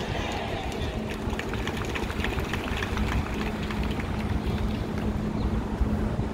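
City street ambience: a continuous low rumble of traffic with distant voices. A steady low hum sets in about a second in and holds.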